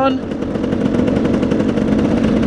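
Dirt bike engine running steadily while riding along a dirt track, a rapid even firing pulse over low rumble from wind and the ride.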